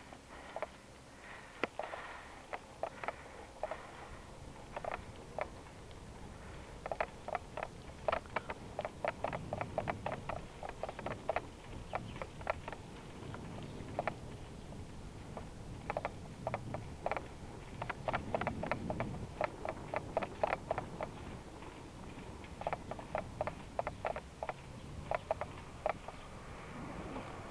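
Bicycle ride noise: irregular light clicks and rattles, sometimes in quick runs of several a second, over a low rumble of wind and road.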